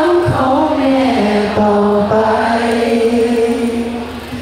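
A man and a woman singing a slow song together into microphones, with long held notes that glide between pitches.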